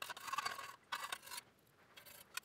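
Faint scraping and clinking of small steel rifle parts, the charging handle and guide rod spring assembly, against an enamel tray of kerosene as they are handled in the liquid. It comes in two short spells within the first second and a half.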